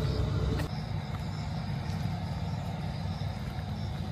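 Steady low outdoor rumble that eases a little over half a second in, with a few faint footstep clicks on a paved path.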